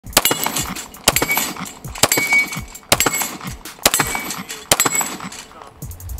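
Six pistol shots from a 9mm FN 509 Tactical, fired at a steady pace a little under a second apart, each followed by a short metallic ring of a steel target being hit.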